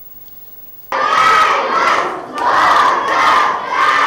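Crowd of schoolchildren cheering and shouting, with clapping. It starts suddenly about a second in, after a quiet opening.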